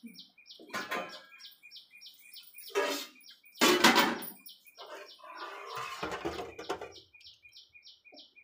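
A bird chirping steadily and fast, about four or five chirps a second, over the clink and clatter of stainless-steel pots and a ladle being handled. The loudest clatter comes about four seconds in.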